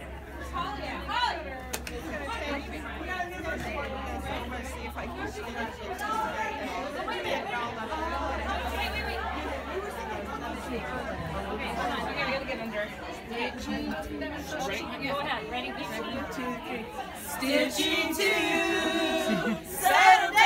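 Chatter of many women talking at once in a room. Near the end a small group of women starts singing together, holding long notes, and it gets louder.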